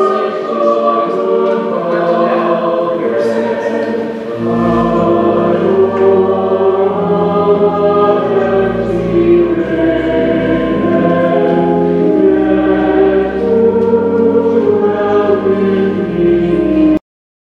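A choir singing a slow hymn in several parts. Low sustained bass notes join about four seconds in and change every second or two beneath the voices.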